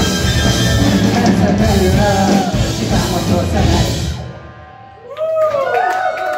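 Rock band playing live, with drum kit, electric guitars, bass and violin, through the final bars of a song; the music ends about four seconds in. Near the end a voice comes in.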